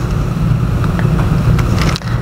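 A steady low rumble, with a few faint clicks from dissecting scissors cutting into the tough sclera of a sheep eye.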